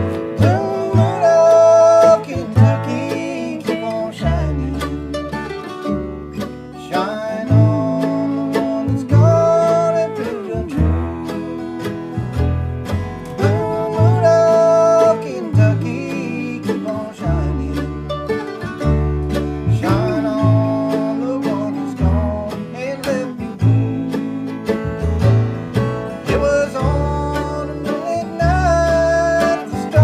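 Acoustic bluegrass trio playing: upright bass thumping out regular low notes, mandolin and acoustic guitar strumming, with a man singing long held notes over it.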